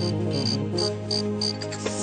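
Song intro: a sustained synthesizer drone with cricket chirps over it, about three short high chirps a second, which stop about one and a half seconds in.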